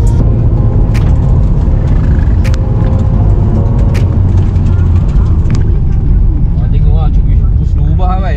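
Nissan Skyline GT-R R34 engine running loudly while driving, heard from inside the cabin together with road noise, with a few sharp clicks scattered through.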